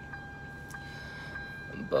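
Steady low hum inside a parked car's cabin, with faint, thin high tones held throughout.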